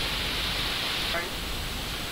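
Steady hiss of background noise with no clear speech, and a brief faint vocal sound a little over a second in.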